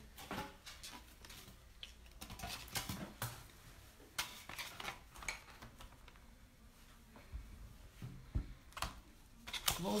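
Scattered light clicks and knocks of small plastic paint bottles and their caps being handled and opened, with a plastic tray set down on the work table.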